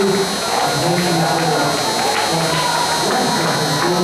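Singing: a melody of held, sliding notes in low voices.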